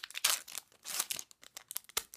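A foil Pokémon booster pack wrapper being torn open and crinkled by hand, a quick irregular run of tearing and crackling noises.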